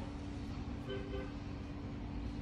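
Steady low hum and background rumble, with a short, faint pitched tone about a second in.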